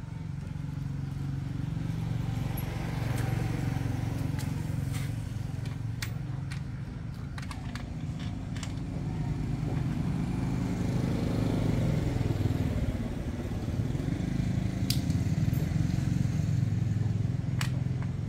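A motorcycle engine running steadily throughout, its level swelling and easing a few times. Scattered light metallic clicks and taps of hand tools are heard over it.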